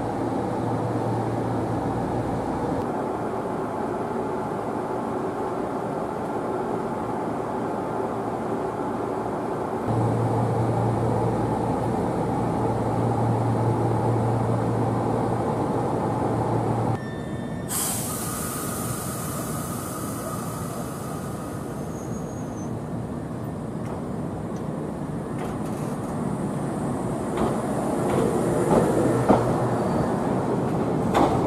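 Yoro Railway electric train heard from inside the carriage: a steady hum and running noise, louder for several seconds in the middle. The sound changes abruptly after about seventeen seconds, and a sudden loud hiss starts and fades over a few seconds. Train noise then rises again near the end, with a few sharp knocks.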